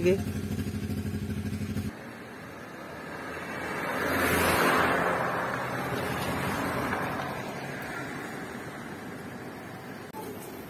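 Steady low hum of a car's engine and cabin, which stops abruptly about two seconds in. Then the hiss of tyres on a wet road swells to a peak near the middle and slowly fades: a vehicle passing in the rain.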